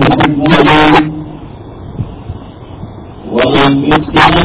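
A man reciting Quranic Arabic in a drawn-out, melodic voice. He breaks off about a second in and resumes near the end, leaving a low background rumble in the gap.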